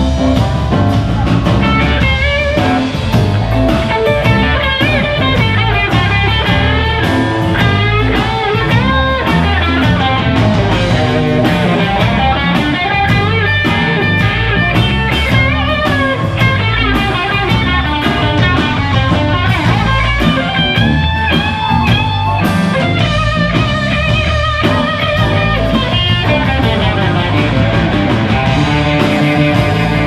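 Live blues band with a Telecaster-style electric guitar playing a lead solo full of bent notes over bass and drum kit.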